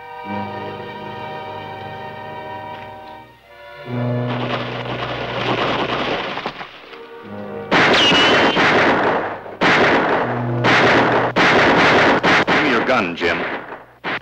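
Dramatic orchestral film score: sustained held chords at first, then swelling to a loud, dense climax about four seconds in, with a run of very loud crashing bursts from about eight seconds on.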